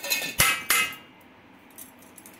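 Steel spoon striking a stainless steel bowl of chopped onion and spices, three sharp clinks within the first second, the middle one the loudest.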